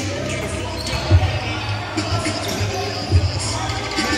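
A basketball bouncing on a gym floor during play: a few hard thumps about a second apart, echoing in the large hall.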